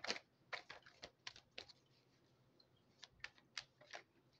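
Faint, irregular light clicks and taps, about a dozen: a quick run in the first second and a half, a pause, then a few more near the end.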